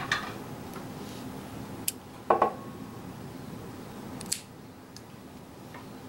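Small scissors snipping the sewing thread off after the knot is tied: a few short metallic clicks, the loudest a little over two seconds in, with a brief ring after it.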